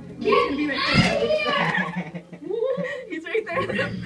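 Several people's voices talking, with the words unclear, over a low steady hum.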